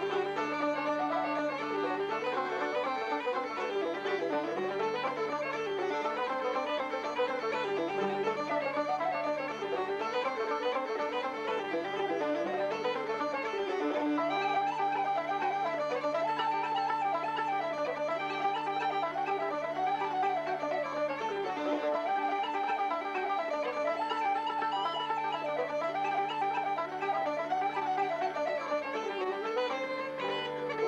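Uilleann pipes playing a tune: the chanter melody winds up and down over the steady drones.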